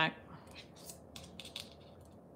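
Faint small clicks and light scraping of pliers and thin 18-gauge craft wire being bent by hand, with several quick ticks clustered about a second in.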